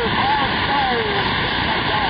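CB radio receiver on 27.025 MHz giving steady static hiss, with a weak, garbled voice from a distant station faintly heard under the noise.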